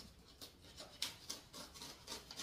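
Faint, short scratching and scraping strokes, about six in a row, as the edge of a cardboard box is cut and worked open by hand.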